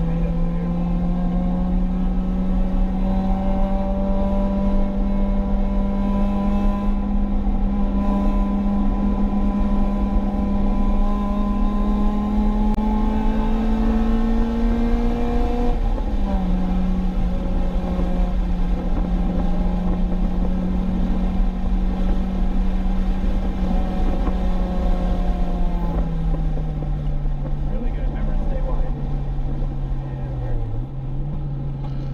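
Acura RSX Type-S's K20 inline-four engine, heard from inside the cabin, climbs slowly in pitch for about fifteen seconds. About halfway through the pitch drops suddenly at a gear change, holds, then slides lower near the end. A constant low road and tyre rumble runs underneath.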